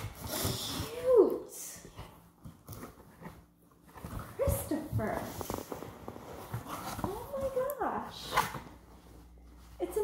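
A woman's excited wordless vocal sounds: several gliding pitched cries of delight. In the first second they are joined by rustling of fabric and cardboard packaging as a cloth apron is pulled from a shipping box.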